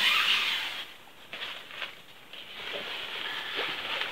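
Nylon tent fabric and its stuff sack rustling as they are handled and pulled open. The rustle is loudest at the start, dips for about a second with a few short scratches, then builds again near the end.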